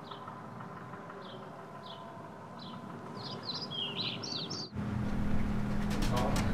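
Small birds chirping outdoors: short high chirps about every half second, then a quicker run of chirps. The sound cuts off suddenly near the end and gives way to a steady low hum.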